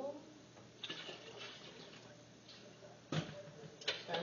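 Liquid being poured from a smaller pot into a large stainless stockpot, a steady splashing pour. About three seconds in there is a sharp knock, and another shortly before the end.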